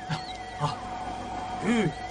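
A steady electronic tone with a faint wavering tone above it, from the film's sound-effect track. Near the end comes one short cry that rises and falls in pitch.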